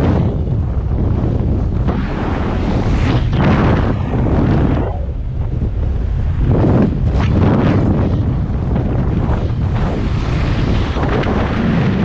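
Rushing airflow of fast speedflying flight buffeting the microphone: a loud, steady low rumble that swells and eases every few seconds.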